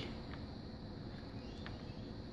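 Faint steady low background hum of a workbench room, with a couple of faint ticks.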